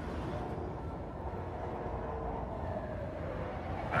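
Steady street ambience: a low, even rumble of city traffic.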